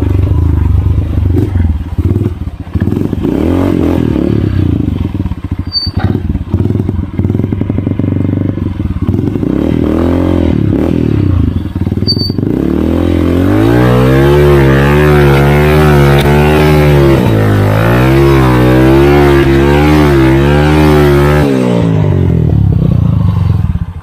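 Motorcycle engine running as it is ridden over a rough dirt trail, uneven with rattles from the bumps in the first half. It then holds steady, strong revs for several seconds before easing off near the end.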